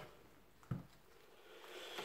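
Faint sound of rabbit skin being worked loose and pulled off over the back by hand, a soft rustle that grows slightly louder near the end, with one short soft sound about a third of the way in.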